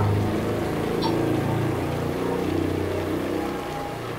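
A steady low hum that fades slightly toward the end, with a faint tick about a second in.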